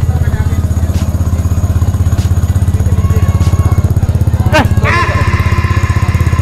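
Vespa Primavera scooter's single-cylinder four-stroke engine idling steadily, heard from the CVT side, with the light metallic jingle ('klincing') of its aftermarket clutch: a characteristic noise of that clutch at idle, not a fault.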